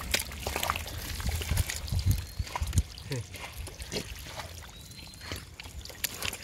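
Hands squelching and scooping through wet mud, with irregular wet slaps and trickles of muddy water.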